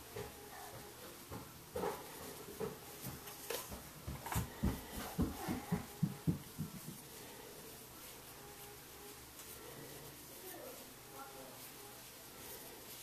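Muffled footsteps of a small child running on the floor upstairs: a quick run of dull thuds, about three or four a second, for a couple of seconds near the middle, with a few scattered knocks before.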